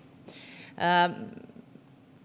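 A woman's short in-breath, then a brief voiced hesitation sound about a second in, a held filler between sentences rather than a word, followed by quiet room tone.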